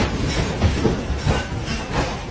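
An apartment shaking in a strong earthquake: a low rumble with continuous irregular rattling and knocking of the building and its contents.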